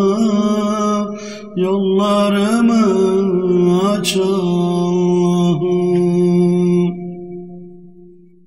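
Unaccompanied male voices singing a Turkish ilahi, with no instruments: a long wordless melodic line over a steady held drone note. The sound dips briefly about a second and a half in, then fades out near the end.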